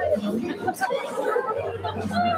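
Chatter of a crowd of guests talking over one another.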